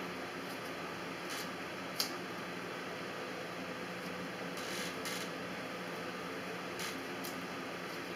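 Knife scraping and cutting at the skin of a prickly pear cactus pad on a plastic cutting board: a few short scratchy scrapes, with a sharp click about two seconds in and a longer scrape near the middle. Under it, a steady hum of room noise.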